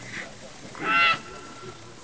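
German Shepherd dog giving a single high-pitched bark at the helper holding the bite sleeve, about a second in, during protection work.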